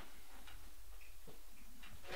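A few faint, unevenly spaced clicks and taps from handling equipment on a DJ desk, over a low steady hum.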